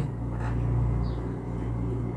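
A steady low background hum with no other distinct sound.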